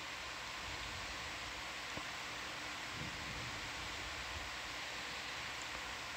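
Steady, even hiss of control-room background noise, with a tiny faint tick about two seconds in.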